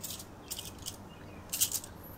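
Metal bangles on a wrist jingling faintly a few times as the hand moves, with a brighter clink about one and a half seconds in.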